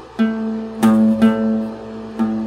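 Acoustic guitar playing an octave interval: three plucks of the octave shape, each note ringing on.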